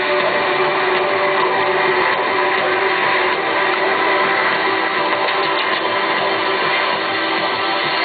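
Live electronic music played loud through a concert PA and recorded on a small camera. It is a dense, steady wash of synth sound with no clear beat, and a few held notes fade out about two seconds in.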